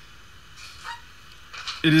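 Low, steady background hiss of room tone, with a faint brief sound a little under a second in. A man's voice starts talking near the end.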